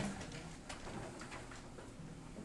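Brief low chuckling laughter at the start, then quiet classroom room sound with a few faint taps.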